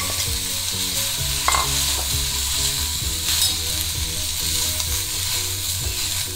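Chopped flat broad beans (avarakkai) sizzling steadily in hot seasoned oil in a kadai as they are tipped in and stirred with a spoon, with a few light clicks of spoon on pan.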